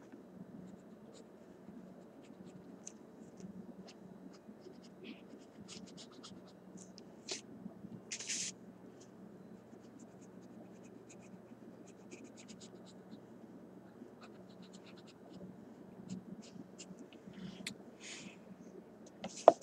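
Felt-tip marker scratching on paper while colouring in: a run of short, quick strokes, with a few louder and longer ones about seven to eight seconds in.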